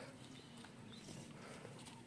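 Near silence: faint outdoor background with a few faint ticks.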